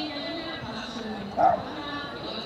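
A single short, loud dog bark about one and a half seconds in, over the murmur of spectators talking.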